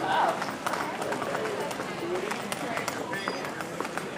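Terminal-hall ambience: indistinct chatter of travellers with footsteps and scattered light clicks.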